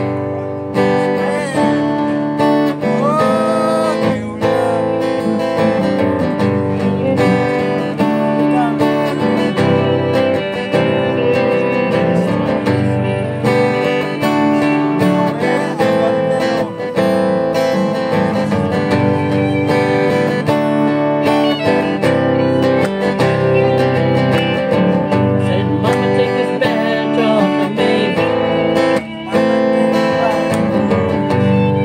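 A live acoustic country band plays: fiddle, strummed acoustic guitar and bass guitar, with the song starting right at the beginning. Early on the fiddle slides up into a couple of held notes.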